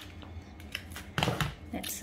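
Paper and card handling: a large paper welcome-pack envelope rustling and sliding as it is moved about, with one louder short sound about a second and a quarter in.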